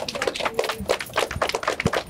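A small group of people applauding: many overlapping hand claps in a quick, irregular patter.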